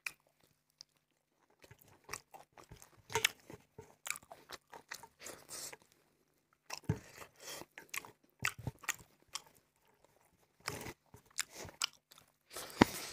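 Close-miked chewing of rice and curry with fatty pork: a run of short wet clicks and smacks from the mouth, breaking off briefly about six seconds in and then going on again.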